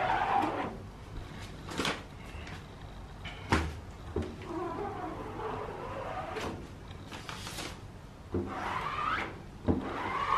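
Plastic squeegee scraping across a silkscreen's mesh, spreading a thin coat of photo emulsion, in several strokes with short squeaky glides, plus a few light knocks from the wooden frame.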